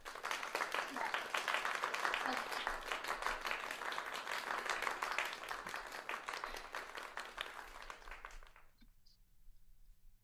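A round of applause, dense clapping that stops abruptly about eight and a half seconds in.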